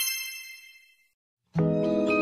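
A bright chime sound effect rings and fades away over about a second. After a short silence, background music with bell-like mallet notes starts about a second and a half in.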